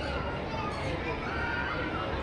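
Crowd chatter in a covered enclosure, with one drawn-out animal call, plausibly from a caged bird, starting about a second in.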